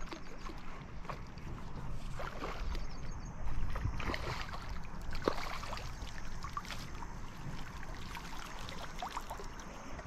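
A hooked rohu splashing and thrashing at the surface near the bank, with water sloshing as a landing net is pushed through the shallow, weedy water. The splashes come irregularly and are loudest about three to four seconds in.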